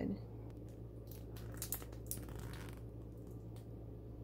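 Faint handling of a plastic squeeze bottle of caramel sauce as it is picked up and its flip-top cap opened: a few small clicks and a brief rustle about one to three seconds in, over a low steady hum.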